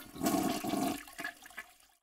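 Toilet flushing: a rush of water, loudest in the first second, then fading away.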